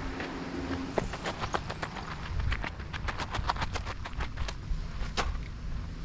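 Footsteps crunching on gravel and dirt: a quick, irregular run of sharp crunches starting about a second in and lasting about four seconds.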